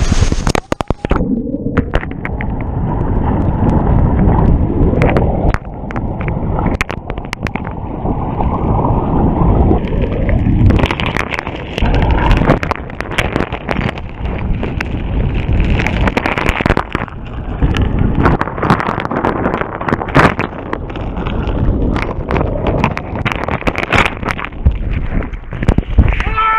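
Rushing waterfall whitewater heard from a camera tumbling through it and lodged in a rock crevice: a dense, muffled churning with little treble, broken by many sharp knocks as the camera strikes rock.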